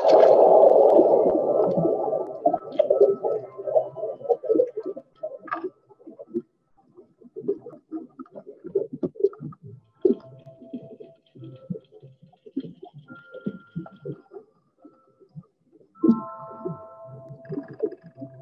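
A diver entering the sea: a loud splash at the start, then muffled underwater gurgling and bubbling in short irregular pulses.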